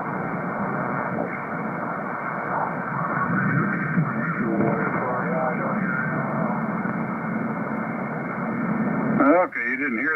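Shortwave radio reception on the 40-metre band played through a Heil Sound powered speaker: steady static hiss as the receiver is tuned across the band, with faint, garbled snatches of sideband voices about halfway through. Near the end a strong station's voice comes in clearly.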